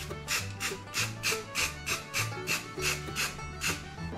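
Aerosol spray-paint can being shaken, its mixing ball rattling in short, even strokes about three times a second.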